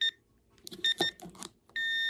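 Electronic beeping from a kitchen appliance's beeper. There is a quick pair of short beeps about a second in, then one longer steady beep near the end.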